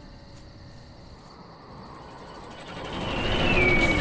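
Horror trailer sound design: a faint, dark ambience for about two seconds, then a swelling rumble that builds steadily louder toward the end, with a thin whine sliding downward on top.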